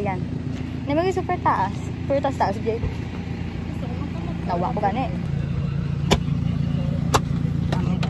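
A motor vehicle's engine running steadily, a low drone, with brief voices over it in the first half and two sharp clicks about six and seven seconds in.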